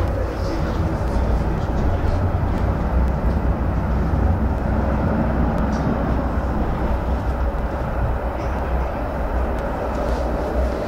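Steady low rumble of a tram running, heard from inside the passenger car.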